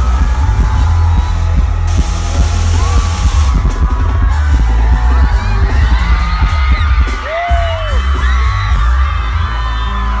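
Live pop concert heard from inside the crowd: amplified music with heavy bass, a singer's voice and the crowd singing along and whooping. A burst of hissy noise rises over it about two seconds in and drops out a second and a half later.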